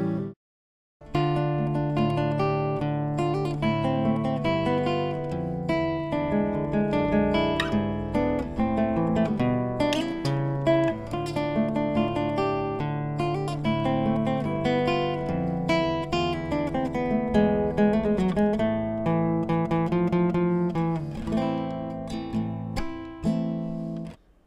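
Nylon-string classical guitar played fingerstyle: plucked arpeggios over ringing bass notes, with no singing. It begins after a short silent gap about half a second in.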